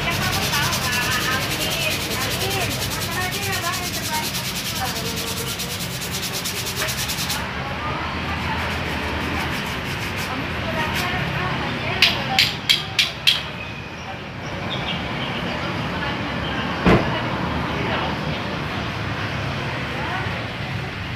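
A disc brake pad being rubbed by hand against sandpaper in quick scraping strokes for the first several seconds. About twelve seconds in there are five sharp knocks in quick succession, and one more knock a few seconds later.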